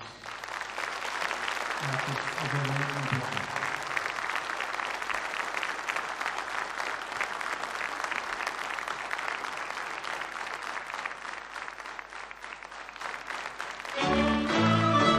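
Audience applauding, building up over the first second or two and thinning out near the end.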